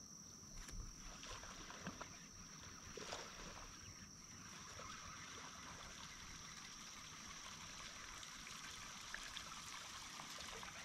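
Faint light splashing and lapping of water, under a steady high-pitched drone of insects.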